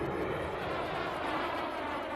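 A steady, rushing, engine-like sound effect with several held tones underneath, the soundtrack of an animated TV commercial intro.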